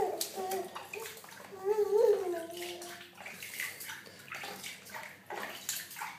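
Shallow water splashing and sloshing in a plastic baby bath as a baby slaps at it and swishes floating plastic ring toys through it. A short high-pitched voice sounds about two seconds in and is the loudest moment.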